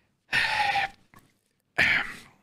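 Breathy sighs from a person close to a microphone: one exhale early on and another near the end, with near silence between.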